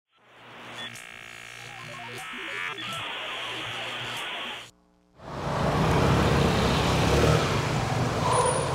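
A short electronic intro tune with a held synth chord and stepping notes, cutting off suddenly about four and a half seconds in. After a brief gap, a Vespa scooter's engine runs as the scooter rides in, quickly rising to a steady level.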